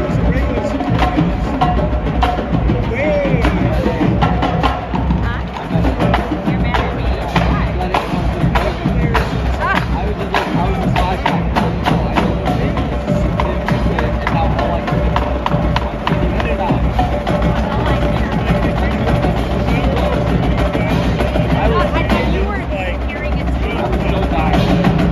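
Drumline playing a rhythmic cadence, with dense, continuous drum strokes sounding through a large arena.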